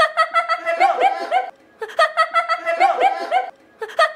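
High-pitched laughter sound effect looped: the same burst of about a second and a half plays twice, with short breaks between.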